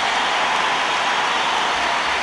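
Large audience applauding steadily, a dense, even clapping with no break.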